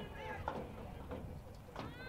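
Faint, high-pitched voices calling out across an outdoor lacrosse field: a short call near the start and another near the end, over low open-air background noise.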